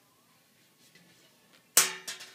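A single sharp knock, an object striking a hard surface, about three-quarters of the way in, with a brief ringing decay and a smaller knock just after, over otherwise faint room tone.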